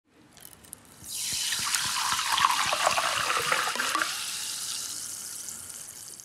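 Water pouring, starting suddenly about a second in and fading gradually over the last two seconds.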